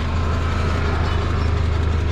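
A vehicle engine idling, a steady, even low drone.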